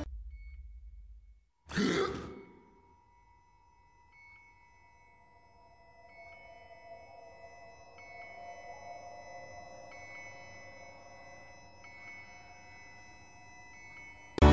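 Faint electronic beeps, like a hospital heart monitor, repeating about every two seconds over a steady hum. About two seconds in there is a short, loud grunt-like vocal sound.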